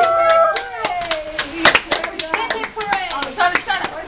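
A small group clapping unevenly, with voices over the claps; sung voices trail off in the first second.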